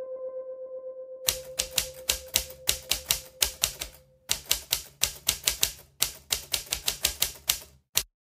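Typewriter keystroke sound effect: rapid clicks about five or six a second in runs broken by short pauses, with a single click at the very end. It plays over the fading tail of one held musical note.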